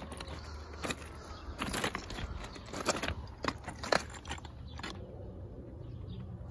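Stones clacking against one another in about half a dozen sharp, separate knocks, over a low steady rumble.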